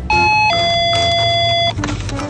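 Electronic two-note door chime, a short higher note followed by a longer lower one, like a convenience store's entry chime.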